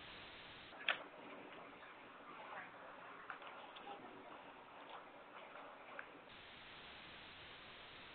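Open conference-call line carrying a faint hiss with scattered small clicks and taps, the sharpest about a second in and another near six seconds. The hiss grows a little stronger after about six seconds.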